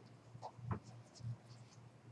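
Faint room noise: a few light scratches and clicks scattered over a low steady hum.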